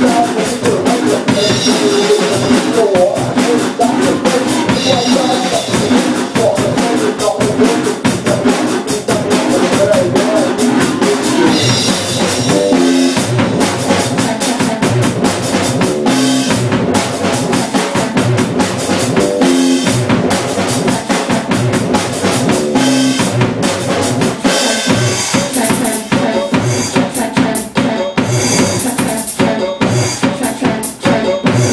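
Live band music: a drum kit played with a steady beat under sustained synthesizer keyboard lines.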